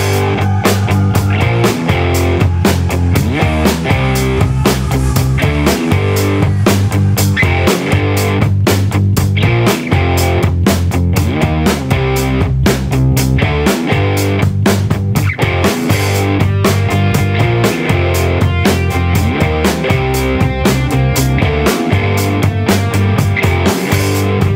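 Loud rock music with electric guitar and drum kit, played without pause.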